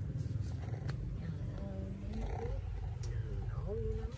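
A steady low rumble, with a person's voice speaking softly about a second and a half in and again near the end.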